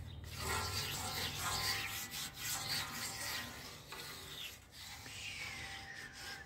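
Metal spatula scraping over a warm flat-top griddle as avocado oil is spread across the steel to reseason it, in uneven scratchy strokes.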